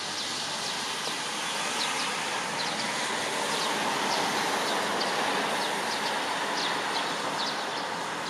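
Steady outdoor background noise: an even hiss that swells a little around the middle, with scattered short, faint, high chirps.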